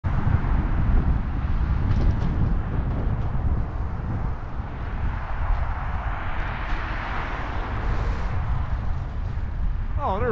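Wind rumbling on the microphone of a moving bicycle, over road traffic; a car's tyre and engine noise swells and fades about six to eight seconds in.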